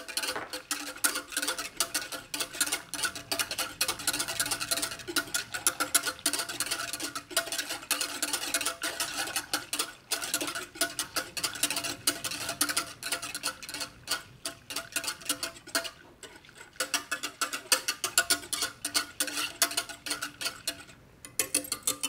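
Wire whisk beating a milk-and-cream mixture in a stainless steel saucepan, its wires clicking rapidly against the pan many times a second, with a short let-up about two-thirds of the way through. This is citric acid being mixed into the warm milk and cream to curdle it for mascarpone.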